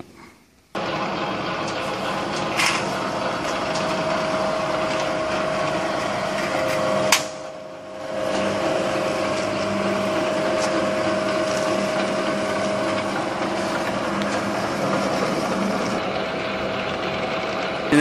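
Lock forming machine running steadily, its motor and forming rollers working a galvanized sheet-metal strip into a seam. It starts just under a second in; a sharp click comes about seven seconds in, followed by a short dip before the running sound picks up again.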